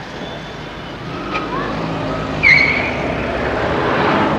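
Street traffic noise, with a short high squeal about two and a half seconds in.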